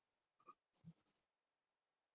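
Faint chalk writing on a blackboard: a short stroke about half a second in, then a quick run of scratchy strokes around the one-second mark.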